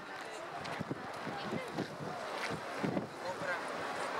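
Indistinct voices murmuring in the background, no words clear, over steady wind noise on the microphone, with a few light clicks.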